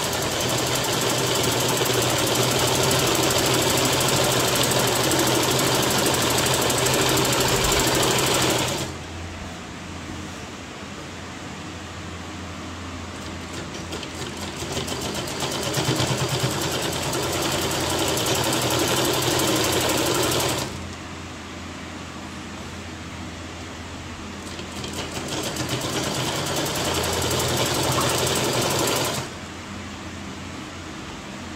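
Sewing machine stitching a seam through fabric in three runs, the first about nine seconds long and the next two about five and four seconds, with pauses between them.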